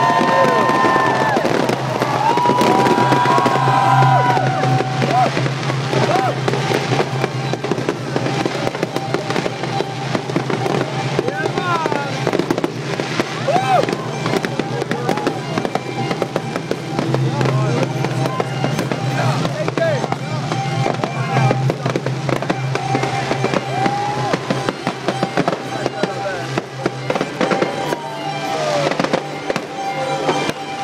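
Fireworks display going off continuously: a dense run of crackles and bangs from shells and sparking fountains, with music and people's voices underneath.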